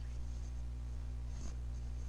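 A steady low hum with faint hiss on the call audio and no speech, with a faint soft rustle about one and a half seconds in.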